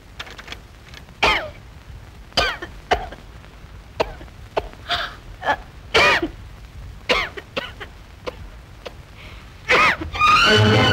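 A woman coughing in a long fit: about ten short, hoarse coughs and throat-clearings, separated by pauses of half a second to a second.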